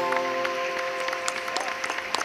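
The last held chord of the song's live accompaniment dies away while the audience applauds at the end of the song.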